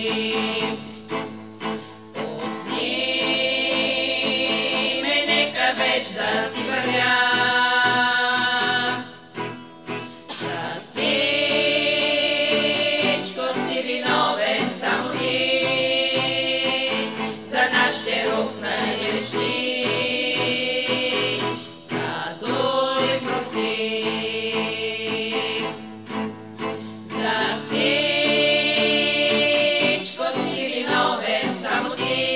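A women's vocal group singing a song in harmony, accompanied by an acoustic guitar. The singing comes in long held phrases of a few seconds, with short breaks between them.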